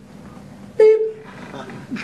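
A man's voice imitating a hospital heart monitor's beep: one short, sharp 'pip' about a second in that falls slightly in pitch, echoing a little in the room.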